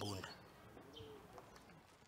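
A dove cooing faintly, a few soft low arched coos, after a man's voice trails off at the start.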